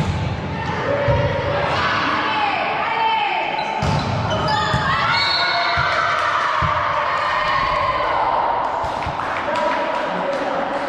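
Volleyball rally in a large gym: a sharp strike of the ball on the serve at the very start, then a few more separate hits of the ball a few seconds in, amid players' shouts and calls throughout.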